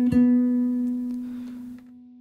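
A single guitar melody note plucked on the guitar, ringing out and fading steadily before it is stopped near the end.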